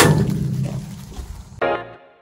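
A sudden thump with a low rumble that fades over about a second and a half, then background music with saxophone begins near the end.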